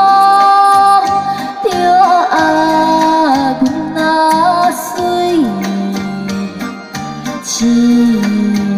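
A woman singing a slow song into a microphone with music accompaniment, holding long notes that slide from one pitch to the next.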